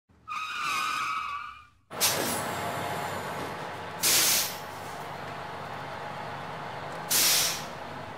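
Bus sound effects for a logo intro: a high pitched tone for about a second and a half, then a sudden start of a steady rumble with hiss, broken twice by loud air-brake hisses about three seconds apart.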